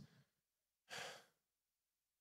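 One short breath from a man into a handheld microphone about a second in, otherwise near silence.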